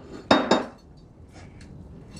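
Ceramic plates set down on a countertop: two quick clatters with a short ring in the first half-second, then a few faint clinks of a serving spoon.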